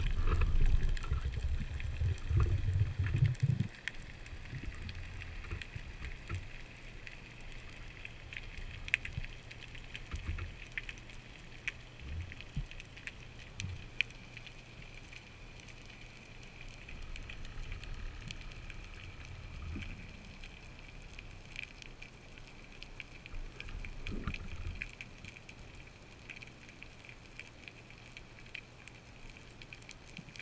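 Underwater ambience on a breath-hold dive: a low rumble of water moving around the swimming diver for the first few seconds, then a quieter steady hiss with scattered faint clicks and crackles.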